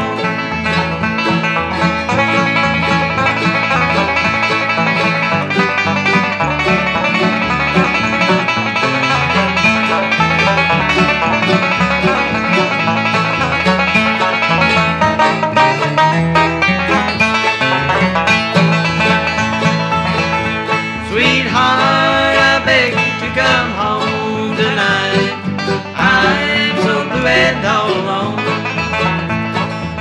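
Bluegrass band playing an instrumental break: banjo and acoustic guitar over a stepping bass line. About twenty seconds in, a brighter lead part with sliding notes comes in over the band.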